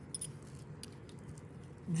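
A few faint, sharp clicks of rusty square-headed nails being handled in the fingers, metal lightly touching metal.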